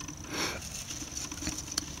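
Light handling noise from a small plastic solar battery charger and AA rechargeable batteries: a short rustle about half a second in, then a couple of faint plastic clicks as the batteries are taken out of the charger.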